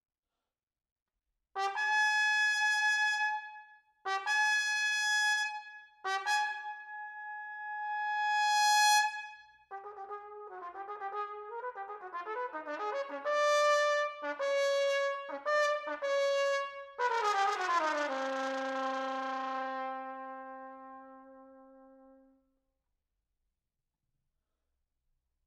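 Unaccompanied cornet. It plays three long held notes on the same pitch, then a fourth that swells louder, then a quicker run of notes. It ends with a downward slide to a low note that is held and fades away.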